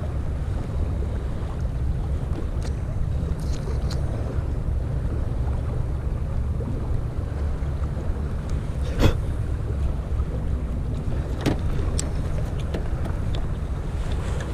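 Steady low rumble of wind buffeting the microphone beside choppy water, with a few light clicks from hands handling the fishing line and rig, the sharpest about nine seconds in.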